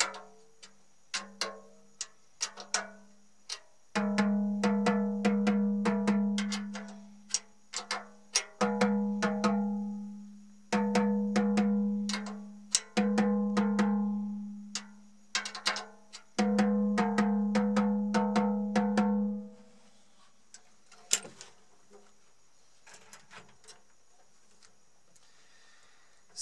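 An 8-inch acrylic tom tapped in quick runs of light stick strokes while its resonant head is being tightened, each run leaving a long low ring: the drum is very resonant. Past the two-thirds mark the tapping stops and only a few faint clicks remain.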